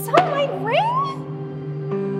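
A woman's high, whining wail as she sobs out "Sell my ring?", her voice sliding up in pitch, over sustained background music that carries on alone for the second half.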